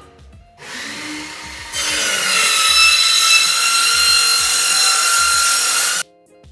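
A power tool cutting steel trunking. It starts about half a second in and gets louder about two seconds in, a steady high whine over a harsh hiss, and cuts off abruptly at the end.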